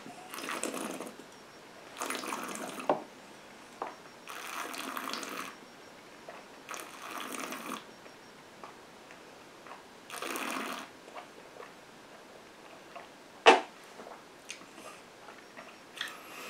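A mouthful of cask-strength whisky being worked around the mouth: five airy slurps through pursed lips, each about a second long, drawing air over the spirit. Near the end there is a single short, sharp click.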